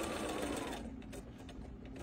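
Sewing machine stitching a seam through layered quilt fabric at a fast, even pace, slowing and stopping under a second in, then a few light clicks.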